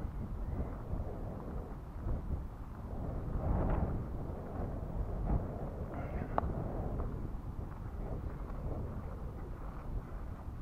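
Wind buffeting the camera microphone outdoors: a steady low noise that swells about four seconds in, with a couple of sharp clicks a little after the middle.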